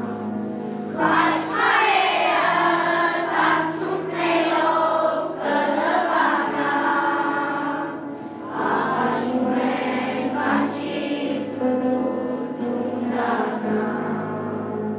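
Children's choir singing together over a steady sustained instrumental accompaniment.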